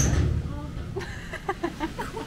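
A door slams with a loud bang and a low rumble right at the start, followed by a woman's short bursts of laughter.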